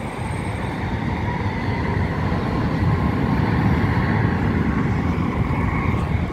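Steady rumble of road traffic passing close by, growing gradually louder, with a faint high whine held throughout.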